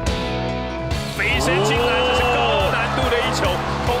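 Background rock music, joined about a second in by live basketball game sound: basketball shoes squeaking on the hardwood court over crowd noise.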